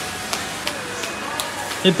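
Steady background noise of a busy indoor hall with faint distant voices, broken by a few light taps.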